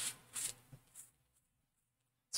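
A paper towel being rubbed and patted over a wet silkscreen stencil to dry it, making a few short, faint rustles in the first second or so.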